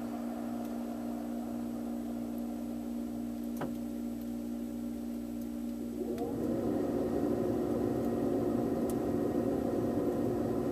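Freezer's refrigeration machinery humming steadily with a low pitched tone, heard from inside the dark freezer, with a faint tick near the middle. About six seconds in, a short rising whine comes, then the hum becomes louder and rougher as the machinery works harder.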